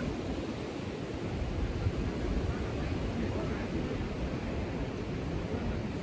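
Steady wind and ocean surf noise, with a low rumble of wind on the microphone that grows about a second in.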